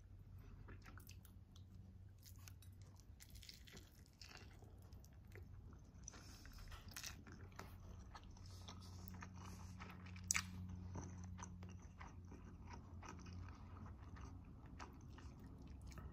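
Faint chewing of a Spam, egg and rice onigiri wrapped in nori: soft, scattered mouth sounds over a low steady hum, with one sharper click about ten seconds in.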